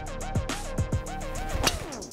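Background music with a beat: deep drum hits that drop sharply in pitch, a wavering melody and fast, regular hi-hat ticks, breaking off briefly near the end.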